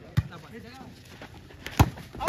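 Two sharp slaps of a hand striking a volleyball, one just after the start and a louder one near the end, over faint voices.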